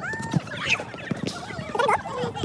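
Sped-up audio: high-pitched, squeaky chipmunk-like voices calling, mixed with a scatter of sharp knocks from feet and a ball on the hard court.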